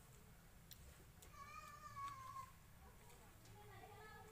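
A faint, high-pitched, drawn-out cry lasting about a second, starting a little after one second in and dropping slightly in pitch at its end.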